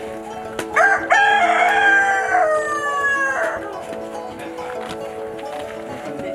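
A rooster crowing once, starting about a second in and lasting a couple of seconds, its pitch sliding down at the end. Background music runs underneath.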